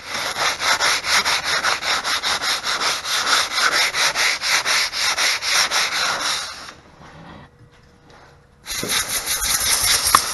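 Sandpaper rubbed by hand over a carved MDF board in quick back-and-forth strokes, about three or four a second. The rubbing stops for about two seconds, then starts again near the end.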